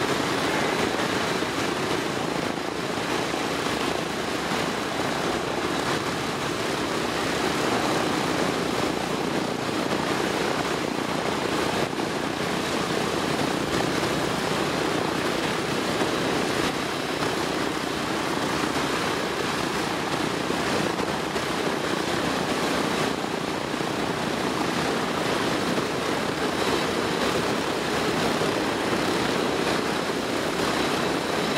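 A B-17G Flying Fortress's four Wright R-1820 Cyclone radial engines running steadily on the ground, propellers turning.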